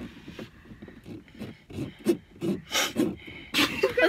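Short, irregular breathy puffs from a person close to the microphone, a few a second, with a sharper hissing puff about three and a half seconds in.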